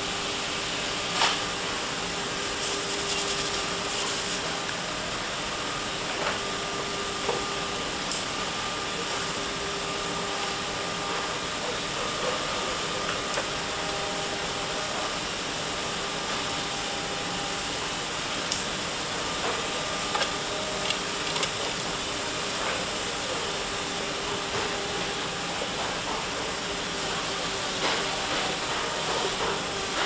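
Steady hum and hiss of factory-floor machinery, with a few light clicks and knocks scattered through it.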